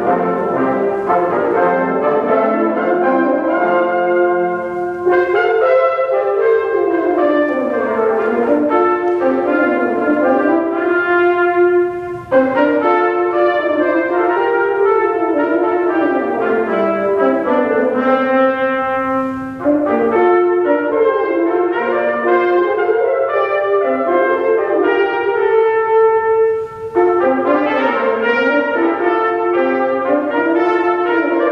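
Brass quintet of two trumpets, French horn, tenor trombone and bass trombone playing an arrangement of a Renaissance Parisian chanson, several lines moving against each other, with three brief breaks between phrases.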